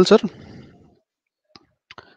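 A man's voice ending a question over an online call, its sound fading away within about a second, then near silence broken by two faint short clicks near the end.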